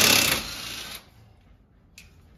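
Cordless power driver running in a short, loud burst, then dying away about a second in.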